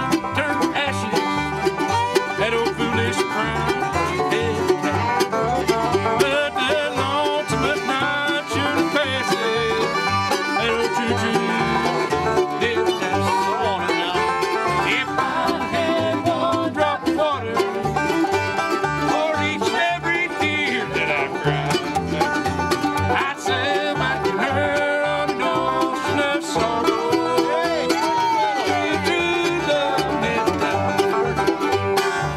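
An acoustic bluegrass jam: banjo, acoustic guitars and mandolin playing a tune together at a steady tempo.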